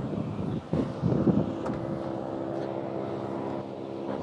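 Steady vehicle engine hum with a faint background noise of air and traffic, heard from inside a car cabin.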